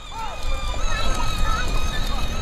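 Outdoor background: a faint brief voice over a low, steady rumble.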